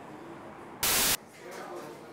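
A short burst of loud static hiss, about a third of a second long, about a second in, that cuts in and out abruptly over faint café chatter.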